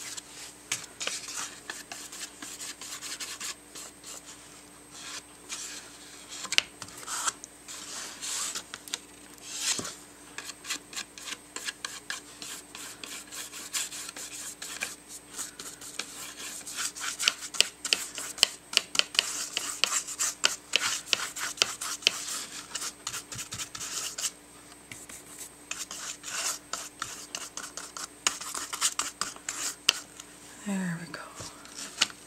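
Paintbrush scrubbing a watered-down acrylic wash across heavy watercolor paper: a dry, scratchy rasp in rapid back-and-forth strokes, coming in runs and heaviest a little past halfway.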